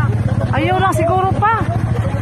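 A motorcycle engine idling steadily, a constant low hum, with people's voices over it.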